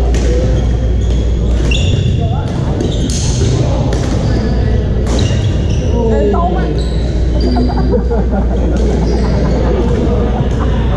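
Badminton doubles play on a hardwood gym floor: short, high sneaker squeaks and sharp racket strikes on the shuttlecock, over a steady low hum and the voices of players on nearby courts, echoing in a large hall.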